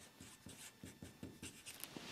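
Faint sound of a felt-tip marker writing on a paper chart: a series of short strokes.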